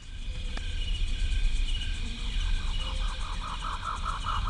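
Outdoor jungle ambience of insects chirring: several steady high-pitched tones, joined about halfway through by a rapid pulsing call of several pulses a second, over a low rumble.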